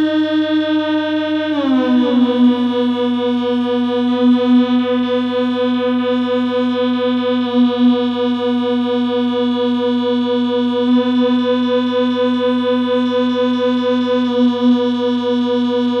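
Waldorf Rocket synthesizer holding one buzzy, overtone-rich drone note. About a second and a half in, the pitch slides down a step, then holds with a fast flutter, and the bright upper overtones shift a few times.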